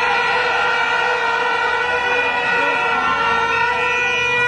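A loud, steady pitched tone held without any change in pitch, like a sustained horn or instrument note, over faint crowd noise.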